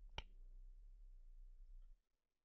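A single short, sharp click about a fifth of a second in, over near silence: a computer mouse button being clicked.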